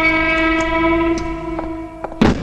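A loud sustained horn-like drone from a horror film's soundtrack: one steady pitch with many overtones, fading near the end.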